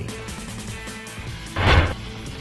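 Quiet background music, with a short whoosh sound effect near the end marking a graphic transition.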